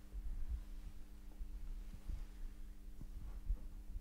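A steady low electrical hum with soft, irregular low thumps.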